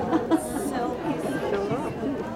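Speech: a woman talking, with background chatter from the crowd.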